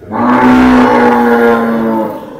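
Cow mooing: one long, loud call held at a steady pitch for about two seconds, very close by.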